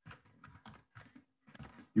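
Typing on a computer keyboard: a quick run of separate key clicks as a short command is entered.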